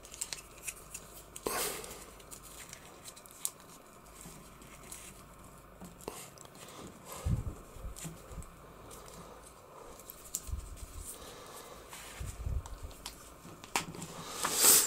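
Hard plastic parts of a Masters of the Universe Origins Skeletor action figure being handled as its clip-on armour is pressed back onto the torso: scattered small clicks and rubbing, with a few dull knocks in the second half.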